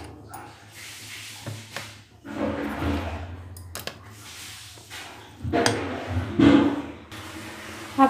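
Silicone spatula stirring thick dal-and-rice batter in a steel bowl, in a few separate swishing strokes.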